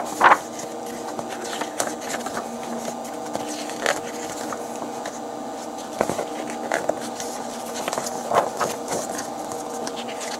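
Glossy paper catalog pages being handled and turned, giving several short crisp rustles and flicks, the loudest just after the start, over a steady background hum.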